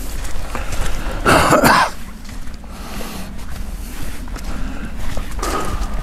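Footsteps through brush and leaf litter over a steady low rumble, with a short cough-like vocal burst a little over a second in and a rustling burst near the end.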